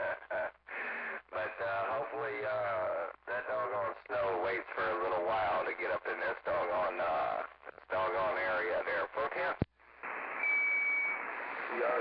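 A station's voice coming over a CB radio receiver, thin and cut off in the highs. About two-thirds of the way through, a sharp click as the transmission drops, then a hiss of open-channel static with a brief steady whistle in it, before a voice returns near the end.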